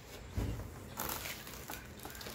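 Packaging being handled: a soft low thump about half a second in, then a clear plastic parts bag crinkling as it is lifted out of the box.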